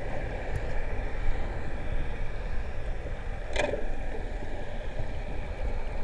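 Muffled underwater sound picked up by a submerged action camera: a continuous low rumble of water with a faint steady hum, and one short sharp sound about three and a half seconds in.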